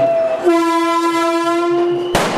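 Vande Bharat train's horn sounding: a shorter, higher note that drops about half a second in to a long, steady, loud lower blast.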